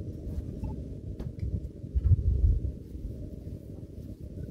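Soft, muffled thumps and handling noise of a sticky bread dough being lifted out of a stainless steel bowl and set down on a stainless steel counter, loudest about two seconds in, with a few faint clicks.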